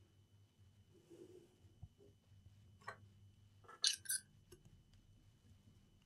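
Quiet room tone with a few faint, short clicks: one about three seconds in and a close pair about four seconds in.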